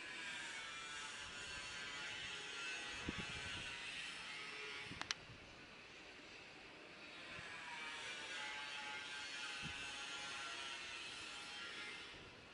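Faint motor-vehicle noise from the street, swelling and fading twice as vehicles pass, with a single sharp click about five seconds in.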